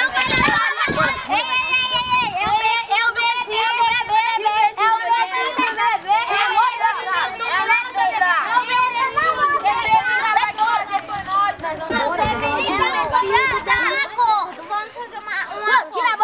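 A crowd of children shouting and talking over one another, many high voices at once.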